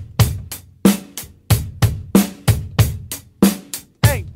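Drum kit playing a steady eighth-note groove with closed hi-hat on every stroke, about three strokes a second: pairs of bass-drum kicks around the snare backbeat on a Yamaha kit with HHX hi-hats.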